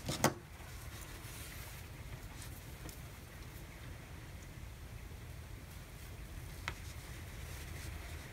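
Quiet room tone with a steady low hum, and faint handling sounds as a tapestry needle draws yarn through crocheted fabric. One small click comes late on.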